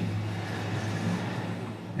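Room tone: a steady low hum with a faint even hiss, and no other event.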